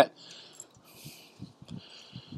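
Faint, soft handling sounds of raw pork chops being laid on a charcoal grill's cooking grate, with a few soft low thumps in the second half.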